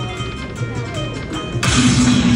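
Dragon Cash slot machine's bonus-round music, steady electronic tones. About 1.6 s in comes a loud crashing sound effect as new coin symbols land, which resets the free spins.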